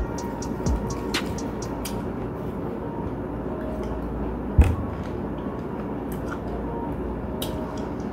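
A steady low background hum with a few faint small clicks and one sharp knock about halfway through, as a metal spoon is used to scoop and eat pomegranate seeds.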